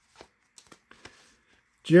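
Cardboard baseball cards being leafed through by hand, giving a few faint, brief papery slides and ticks as cards pass from one stack to the other.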